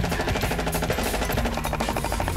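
Multi-barrel gatling-style paintball gun firing a continuous rapid burst, a fast even stream of shots.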